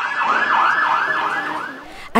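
Police vehicle siren in a fast yelp, rising sweeps repeating about four times a second, fading out near the end.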